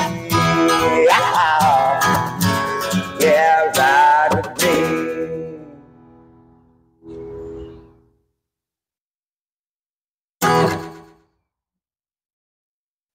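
Acoustic guitar picked with a plectrum, playing the closing lines of a song with some gliding notes; the ringing dies away about five to six seconds in. A soft chord rings briefly around seven seconds, and one last short strum comes about ten and a half seconds in, cut off quickly.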